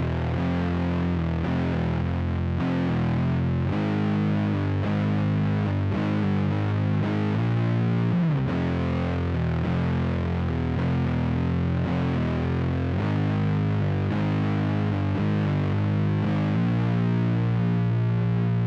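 Heavily distorted electric guitar tuned down to C standard, playing a slow doom metal riff in F minor built from the harmonic minor scale: sustained, low single notes moving every second or so, with a sliding drop in pitch about eight seconds in.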